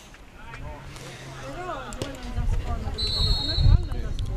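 Ambient sound of a small football ground: distant players' and spectators' voices calling out, with low wind rumble on the microphone growing in the second half and a short, high, steady tone about three seconds in.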